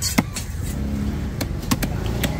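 Steady low rumble of a motor vehicle's engine running, with four sharp knocks of a knife against a wooden chopping block, one early and three in the second half.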